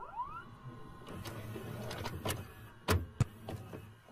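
A videotape machine's mechanism: a motor whirring up in pitch at the start over a low hum, then several mechanical clicks and clunks, the loudest about three seconds in.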